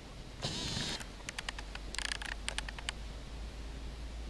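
Rustling of tall grass with scattered sharp clicks from movement close to the microphone, over a low steady rumble. There is a longer rustle about half a second in and a shorter one around two seconds in.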